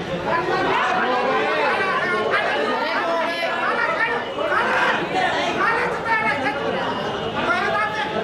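Crowd of spectators talking at once: a dense babble of many overlapping voices, with no single speaker standing out.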